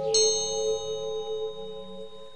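A high bell struck once just after the start, its bright ringing tones slowly fading, over a steady meditation drone of sustained tones. The drone thins out toward the end.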